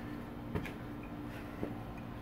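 Three soft thuds of hands and feet landing on a towel over patio pavers during burpees, over a steady low hum.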